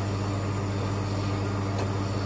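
Coffee machine running steadily while making a caffe latte: a steady low hum over a noisy whir, with a small click near the end.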